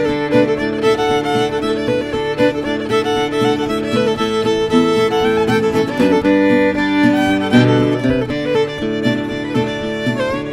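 Old-time fiddle tune in the key of D, the fiddle bowed in standard tuning with a steel-string acoustic guitar strumming a rhythm backing.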